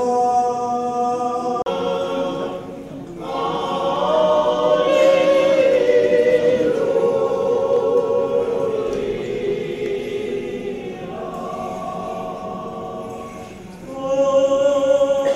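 Choir singing Orthodox church chant, with several voices holding long notes.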